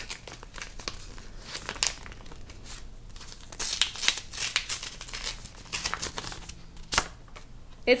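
Paper envelope being torn open by hand: bursts of paper crinkling and tearing, with a sharp tap near the end.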